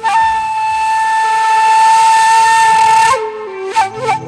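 A wind instrument in a Tunisian music medley holds one long, bright, high note for about three seconds, then drops into a quick ornamented melody.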